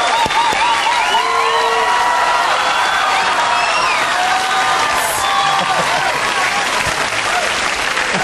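Studio audience applauding steadily, with voices whooping and shouting over the clapping.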